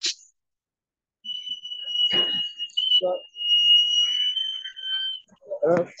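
A short click, then about a second in a steady high-pitched alarm-like tone that holds for about four seconds before stopping, with a few faint knocks and noises beneath it, heard over a caller's open microphone.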